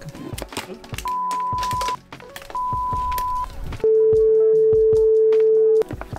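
Background music with a beat, over which three steady electronic beeps sound: two high beeps of about a second each, then a lower, louder tone held for about two seconds.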